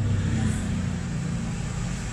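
A steady machine hum with an even whirring noise over it, unchanging and with no knocks or clicks.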